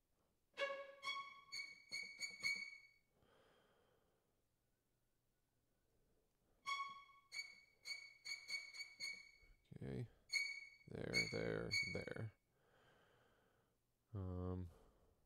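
Short, high, detached string notes played back from a virtual instrument, in two quick phrases with a pause between. About ten seconds in comes a louder, lower sound lasting about two seconds.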